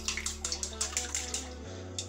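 Chopsticks beating raw eggs and dashi in a steel bowl: quick sloshing strokes, about five a second, with light clicks against the bowl, tailing off near the end.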